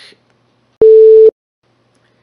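A single loud electronic beep: one steady mid-pitched tone about half a second long, switching on and off abruptly, about a second in.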